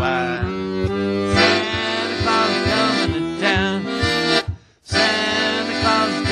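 Piano accordion playing chords over a steady oom-pah bass beat, with a man's voice singing along at times. The sound cuts out completely for a moment about four and a half seconds in.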